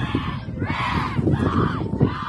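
Several high-pitched shouted calls from softball players, short yells one after another over steady field noise.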